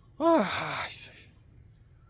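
A man's loud sigh: a voiced 'haah' that falls in pitch and trails into a breathy exhale lasting about a second, the sigh of someone winded from climbing a mountain.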